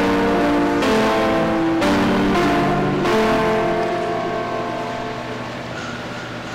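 Keyboard instrument playing sustained chords that change about once a second, the last chord held and fading away over the final two seconds: the closing chords of a hymn.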